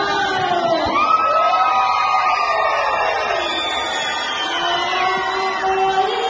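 A large group of young children's voices singing and calling out together, many voices at once with pitches that rise and fall.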